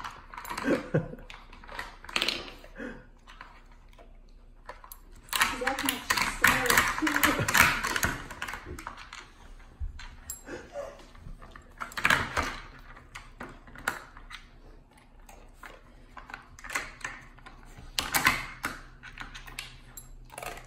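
A Vizsla nosing and pawing at a plastic dog treat puzzle, its flip lids and sliding pieces clicking and clattering in irregular bursts.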